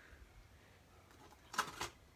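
Quiet room tone, then a brief crinkly rustle about one and a half seconds in as a clear plastic stamp-set case and a die sheet are handled.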